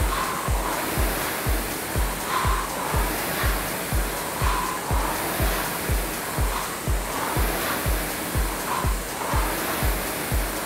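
Background music with a steady beat of about two thumps a second, over the steady whoosh of a Concept2 rowing machine's air flywheel being rowed at 28 strokes a minute, the whoosh swelling about every two seconds with each drive.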